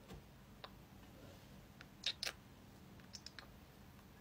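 A few faint clicks and taps from a glass dropper being drawn out of a glass serum bottle and handled, the clearest two about two seconds in.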